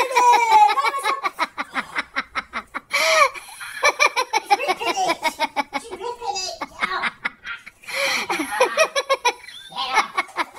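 People laughing hard, in long runs of rapid ha-ha pulses.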